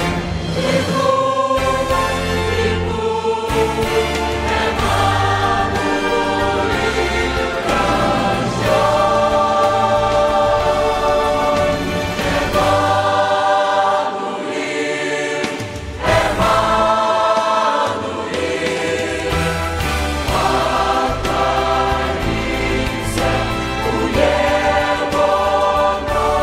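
Large mixed choir of men's and women's voices singing a Christmas hymn in full harmony, with a brief pause between phrases about fifteen seconds in before the voices come back in.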